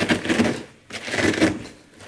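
Shredded white cabbage being squeezed and pressed by hand in a plastic bowl, in two long pushes, working the cabbage so that it gives up its juice.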